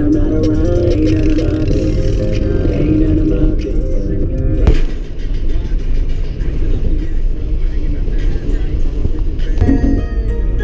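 Background music for about the first five seconds, then a sudden cut to the low, steady road and engine rumble of a car's cabin while driving. Music comes back just before the end.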